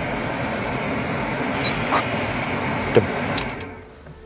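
Car air conditioning blowing from a dashboard vent close to the microphone: a steady rush of air, the sign of a working AC that is blowing cold. It falls away near the end, with a couple of light clicks just before.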